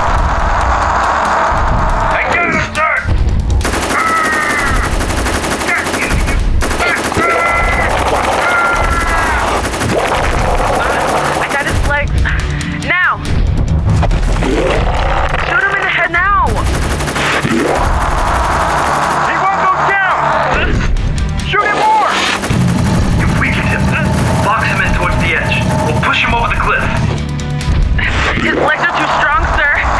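Fight sound effects for a radio drama: rapid automatic gunfire with shouting voices breaking in again and again, over music.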